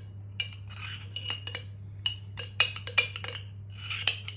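A metal spoon scraping and clinking against the inside of a glass mayonnaise jar as mayonnaise is dug out. There are about a dozen light, irregular clinks with short scrapes between them, over a faint steady low hum.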